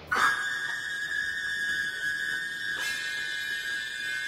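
A steady, high-pitched whistle-like tone with overtones, held unbroken for about four seconds: an eerie sustained soundtrack drone from a TV drama's atomic bomb test scene.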